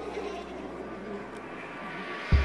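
A steady rushing noise with a low hum underneath, growing brighter near the end.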